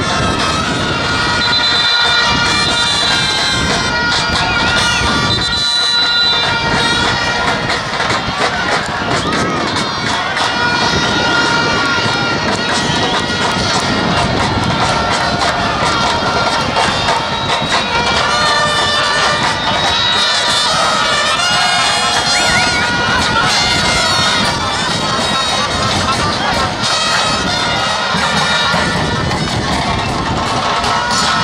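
Football stadium crowd noise: fans shouting and chanting, with many long held horn notes at several pitches blown over it.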